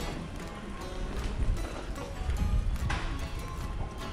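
Footsteps on a tiled arcade walkway, in an uneven run of low thuds and sharp clicks, with music playing in the background.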